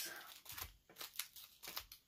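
Faint crinkling of the plastic packets of clear stamp sets being handled and shuffled through, in several short rustles.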